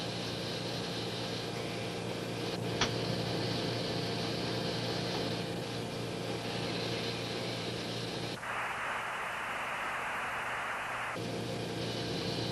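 Steady hiss and hum of a radio channel carrying no speech, with one click about three seconds in. About eight seconds in a harsher burst of static lasting about three seconds breaks in.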